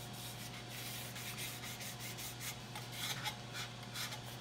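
Wet sandpaper rubbed by hand over a varnished mahogany hull model slick with soapy water: soft, irregular scrubbing strokes, a little louder about three seconds in.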